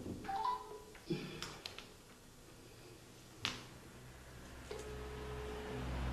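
Scattered sharp clicks and taps of papers and a pen handled on a desk in a small room, the loudest about three and a half seconds in, with a few faint brief tones and a low hum building near the end.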